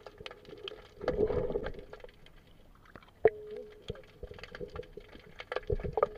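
Underwater sound picked up by a camera below the surface: scattered sharp clicks and crackles throughout, with a louder rush of noise about a second in and one sharp knock about three seconds in.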